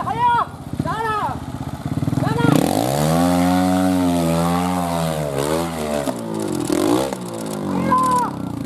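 Trials motorcycle engine revving as the bike climbs a steep rocky slope: the engine note rises sharply about two and a half seconds in, holds high for a few seconds, then drops away near six seconds, followed by shorter throttle blips.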